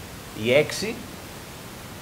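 A man's voice says a couple of words in Greek, then a pause filled only by a steady background hiss.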